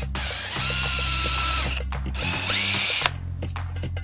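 Electric drill boring through aluminium angle: a high whine with cutting noise for over a second, then a shorter second run that spins up and stops abruptly about three seconds in. Background music plays underneath.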